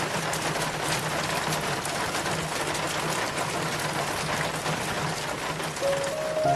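Steady rain pattering: a dense, even hiss of many fine drop ticks.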